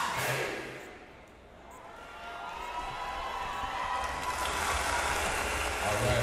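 A brass marching band's closing chord cuts off and rings out through a gymnasium. Crowd noise and cheering then build slowly.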